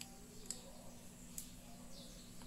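Quiet room with a low steady hum and a couple of faint clicks from a paracord survival bracelet being handled, about half a second and a second and a half in.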